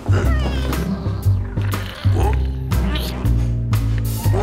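Cartoon background music with a repeating bass line, over which a cartoon character gives short, high, wavering vocal sounds.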